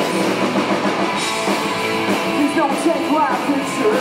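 Live rock band playing at full volume, guitar to the fore, with a man singing.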